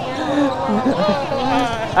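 Speech only: a man's voice talking, quieter than the loud talk on either side, outdoors among people.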